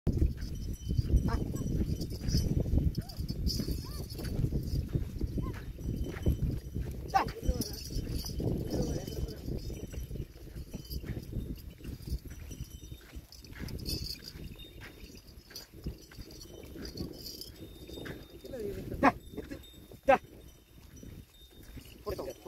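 A pair of bullocks drawing a seed drill through a field: steady rumbling with bursts of jingling like bells, loudest in the first half. Two sharp knocks come about a second apart near the end.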